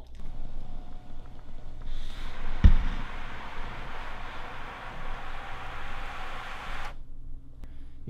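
Electric motor of a power reclining home theater chair running for about five seconds as the back reclines toward the wall, with a single knock shortly after it starts, then cutting off suddenly.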